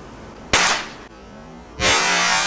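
Two sharp reports from a pellet air rifle, about a second and a quarter apart, the second with a longer ringing tail.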